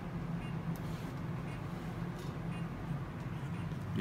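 Steady machine hum from an endovenous laser ablation unit running during the vein ablation, with faint short beeps about once a second.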